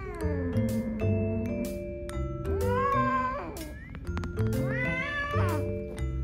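A female cat in heat yowling: two drawn-out calls that rise and then fall in pitch, about two and a half and five seconds in, with the tail of another call falling away at the start. Background music with mallet-like notes plays throughout.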